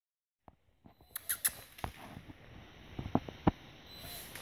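Light, scattered taps, scrabbling and a few sharper knocks of a kitten's paws and a toy on a hardwood floor during play.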